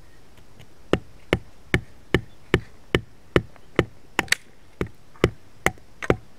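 A thick wooden club hammering a thin wooden stake into hard, stony ground, a dry wood-on-wood knock repeated steadily about two and a half times a second, starting about a second in.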